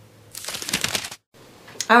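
A person slurping a sip of tea from a mug: a short, rustly slurp lasting under a second that cuts off abruptly.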